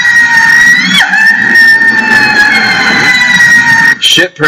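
A man's long, high-pitched wail, held on one note for about four seconds, with a brief crack upward in the voice about a second in.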